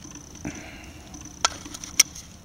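AA battery pushed into the plastic cell compartment of a small solar battery charger: a soft rustle of handling, then two sharp clicks, the louder one at the end as the cell snaps into place.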